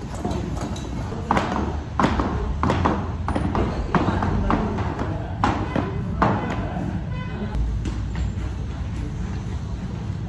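Heavy battle ropes slapping against the gym floor in uneven repeated strikes, about one or two a second, during a rope-wave exercise. The strikes are sharpest for the first two-thirds and become less distinct near the end.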